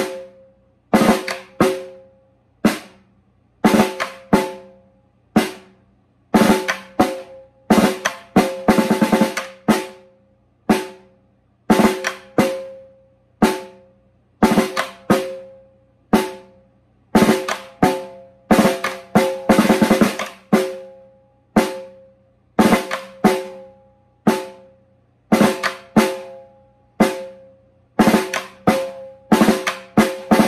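Snare drum played with sticks in a steady, repeating rhythm: groups of sharp strokes about a second apart, each with a ringing head tone, and some short rolls packed in between.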